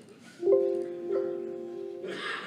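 A computer's pitched chime, played through the hall's speakers as the system volume is turned down: it sounds once about half a second in and again about a second in, each ringing on and fading.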